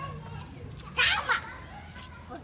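Young children's voices, with one short, loud, high-pitched child's call about a second in.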